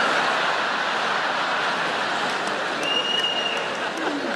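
Large stand-up comedy audience applauding and laughing in a steady wash of crowd noise. A short high whistle comes about three seconds in.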